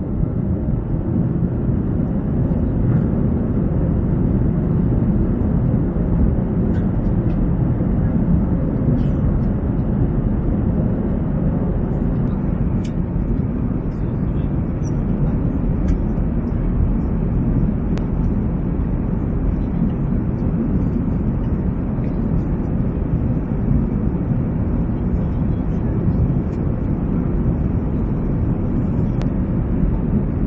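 Steady airliner cabin noise inside an Airbus A350: a constant low rumble of engines and airflow. A few faint clicks sound over it at scattered moments.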